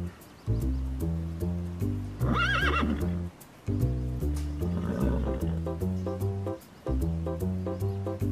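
A horse whinny with a warbling pitch over bouncy background music with a steady beat, followed a couple of seconds later by a lower, weaker call.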